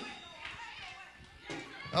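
Faint mixed voices of a church congregation calling out, with the preacher's voice coming in on the microphone at the very end.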